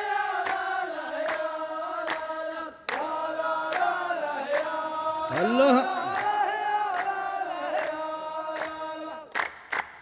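A chorus of men (the saff rows of a Saudi muhawara) chanting a drawn-out refrain in unison, with sharp unison hand claps a little over once a second. About halfway through, one voice swoops upward.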